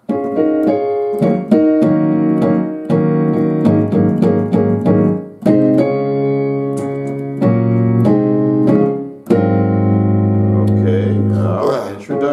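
Digital piano playing a slow two-handed gospel chord progression in D-flat, moving between major and minor chords (the major–minor–major movement typical of traditional gospel). The chords change every second or two and end on a long, low held chord.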